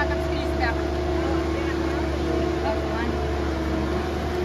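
A large marina boat-moving forklift's engine running at a steady drone with a low rumble underneath, with faint voices over it.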